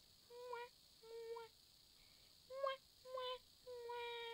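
A child's voice humming or hooting into a hand held at the mouth: four short high-pitched notes, then a longer held note starting near the end.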